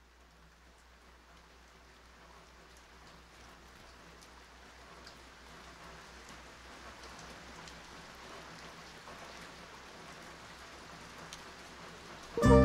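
Vinyl record surface noise as the stylus runs in the lead-in groove: soft hiss with scattered crackles and clicks over a low steady hum, slowly growing louder.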